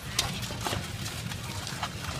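Outdoor street-market background: a steady low rumble with several irregular sharp knocks and clicks, the loudest just after the start.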